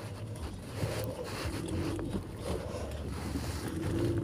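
Steady low rumble of a car heard from inside the cabin: engine and road noise while the car drives slowly.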